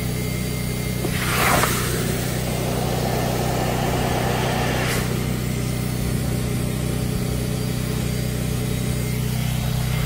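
A carpet-cleaning extractor's vacuum runs with a steady drone while a water claw tool is pulled across a soaked area rug, sucking out rinse water. A rushing slurp of water and air comes about a second in, and more slurping follows a few seconds later.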